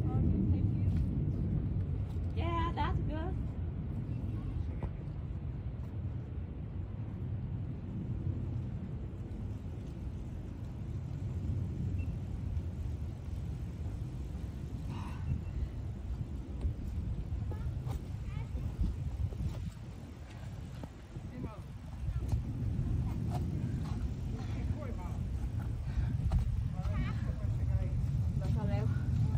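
Steady low outdoor rumble, with brief faint voices about two seconds in and again near the end.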